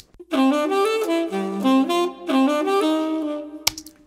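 Tenor saxophone playing a jazz melodic line, recorded through a condenser microphone and heard on its own. The sound is much brighter, with strong upper overtones. The phrase stops shortly before the end.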